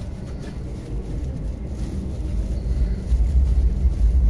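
A low, steady rumble that gets louder about halfway through.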